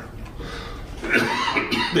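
A man coughing, starting about a second in, then beginning to speak again.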